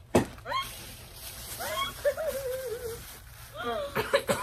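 Muffled, wavering voice sounds and laughter from people with their mouths stuffed full of marshmallows, with a sharp knock just after the start. A plastic bag rustles as one of them spits the marshmallows into it.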